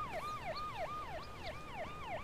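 Police car siren in a fast yelp: a tone that drops in pitch and snaps back up, about four sweeps a second, repeating steadily.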